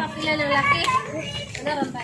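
Several people talking at once in the background, quieter than the nearby voices around it.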